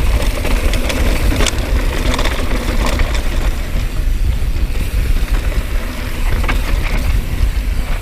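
Wind rumble on a GoPro microphone riding a mountain bike fast down a dirt trail, with the tyres rolling over dirt and loose gravel and a few sharp clicks and rattles from the bike.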